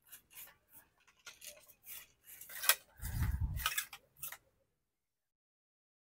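Light clicks and rubbing from a fishing rod being handled, with a dull thump about three seconds in. The sound cuts out completely about a second before the end.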